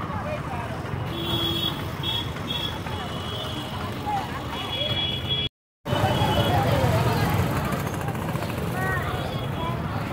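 Busy roadside market ambience: the chatter of many voices over the hum of passing motor traffic. The sound cuts out completely for a moment about halfway through.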